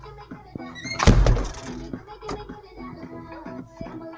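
A tractor's cab door being pulled shut: one heavy thump about a second in, followed by a sharper click a little later, over background music.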